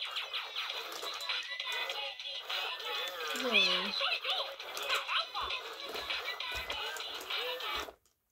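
Spanish-language Mickey Baila y Baila animated plush toy playing its recorded Mickey voice and music through its small built-in speaker, tinny and thin. It cuts off suddenly at the end, with the toy's batteries running weak.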